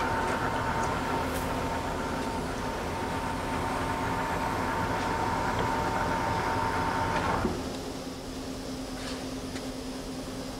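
Clausing-Metosa C1745LC engine lathe running under power cross feed, a steady gear whine over a mechanical hum. About seven and a half seconds in the whine cuts off and the machine settles to a quieter, lower hum.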